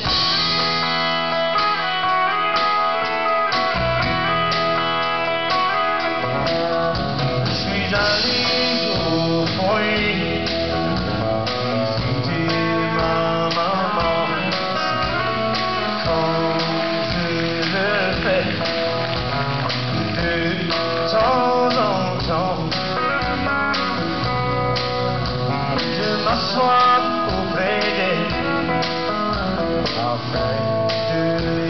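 Guitars playing the instrumental opening of a live acoustic song. The music starts at once.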